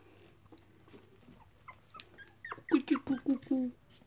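Three-week-old Toy Fox Terrier puppy whimpering: a quick run of five or six short, high cries starting about two and a half seconds in.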